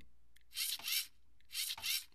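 LEGO Mindstorms EV3 servo motor driving a beam arm, heard as two short raspy gear whirs about a second apart.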